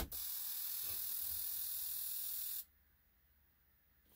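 Fuel injector on a GM 8.1 Vortec V8 being pulsed open by the scan tool: a click, then a steady hiss for about two and a half seconds that cuts off suddenly, as fuel sprays through the injector and rail pressure falls by about 30 psi. The injector is flowing evenly with the others and is in good shape.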